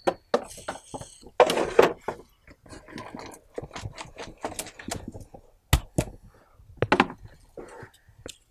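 Dry leaves crackling and rustling as loose compost is tipped from a pot into a plastic bin and worked by hand, with a run of small irregular clicks and two sharp knocks in the second half.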